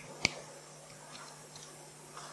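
A single sharp click about a quarter second in, then quiet room tone with a steady low hum.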